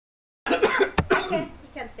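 A person coughing and vocalising, starting abruptly about half a second in, with a sharp click about a second in.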